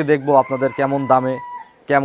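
A rooster crowing in the background, one long held call from about half a second in until near the end, under a man's speech.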